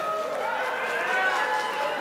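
Several voices of a theatre audience murmuring at once, a low steady hubbub.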